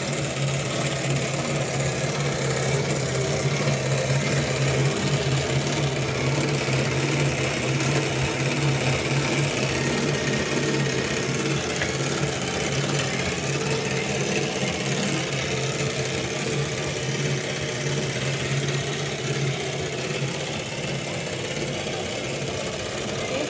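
A running motor's steady, unchanging low hum.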